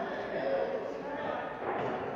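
Indistinct voices talking in a large church, too faint and unclear for words to be made out.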